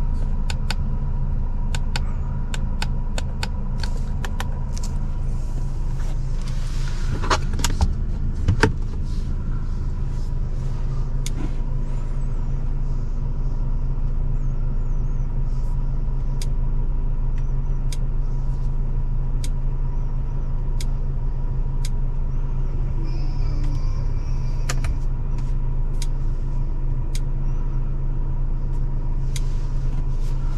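Steady low hum of the Audi S3's turbocharged four-cylinder idling, heard from inside the cabin. Many light clicks from fingers tapping the touchscreen and buttons run over it, with a brief rustle and two louder knocks about seven to nine seconds in.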